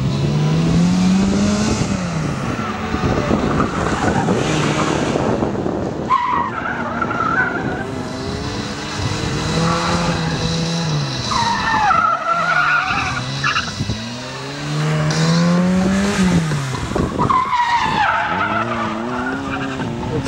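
ZAZ Tavria hatchback with a 1.6-litre engine on slick tyres driven hard through an autoslalom course. The engine revs climb and fall back several times, and the tyres squeal in the turns: about six seconds in, for a couple of seconds around twelve seconds, and again near the end.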